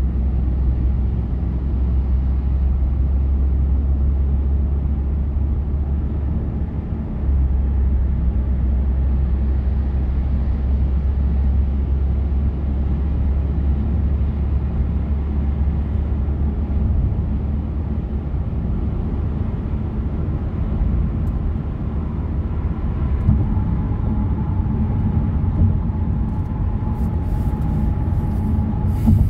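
Steady low rumble of a car's road and engine noise at expressway speed, heard from inside the cabin.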